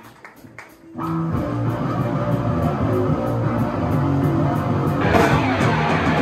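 Live punk rock band starting a song: after a quiet first second with a few sharp clicks, electric guitar and bass guitar start playing about a second in. The sound fills out and gets brighter about five seconds in as more of the band comes in.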